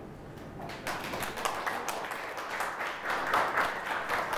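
Audience applauding, faint at first and swelling about a second in.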